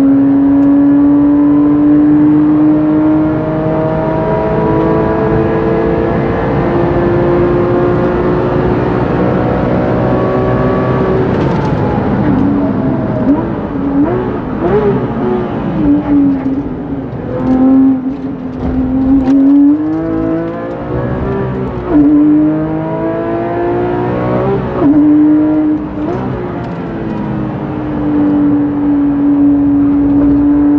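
Porsche 997 GT3 RS Mk2's flat-six engine heard from inside the cabin at full throttle, its note climbing slowly for about eleven seconds in a high gear. It then drops and jumps up and down several times as the car brakes and downshifts with throttle blips, and climbs again in steps through upshifts near the end.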